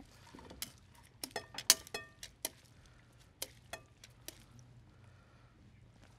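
Metal tongs and a fork clinking and scraping against glass mixing bowls as a shredded cabbage salad is tossed and pushed from one bowl into another. About ten light, scattered clicks, a few with a short glassy ring.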